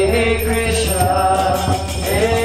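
A man singing a devotional Sanskrit chant, with long held notes that slide up into each phrase, over a steady low hum.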